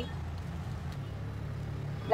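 Steady low hum of background ambience, with no distinct events.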